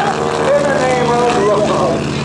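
Stearman biplane's radial engine droning in flight, mixed with an airshow public-address voice and music.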